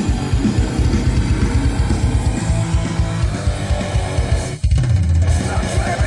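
Rock music with electric guitar and bass over a steady beat. It breaks off for an instant about four and a half seconds in, then comes back.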